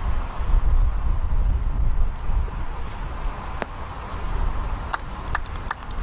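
Wind buffeting an outdoor microphone: a loud, uneven low rumble with a steady hiss, and a few faint clicks in the last couple of seconds.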